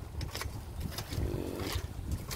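Wind rumbling and buffeting on the microphone, uneven in strength, with a few faint clicks.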